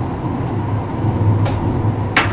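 Heathrow Express Class 332 electric train heard from inside the carriage while running: a steady low rumble with a faint even hum, and one short sharp click about one and a half seconds in.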